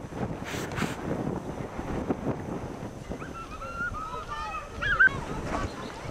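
Wind rumbling on the microphone, with a run of short, high, wavering calls from about three seconds in, loudest about five seconds in.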